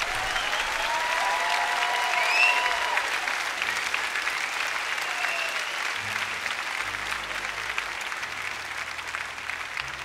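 Large audience applauding, with a few cheers over the clapping in the first three seconds. The applause peaks a couple of seconds in, then slowly thins out.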